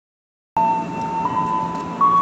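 Sustained electronic tones at two close pitches that cut in about half a second in, the higher one stepping up a little about a second later, over the noise of a commuter-train platform.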